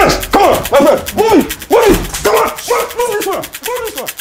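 A man crying out over and over in short yells that rise and fall in pitch, about two a second, as he is beaten.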